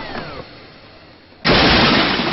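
Cartoon sound effects: a short falling pitch slide as the music dies away, then a sudden loud noisy blast about one and a half seconds in that keeps going.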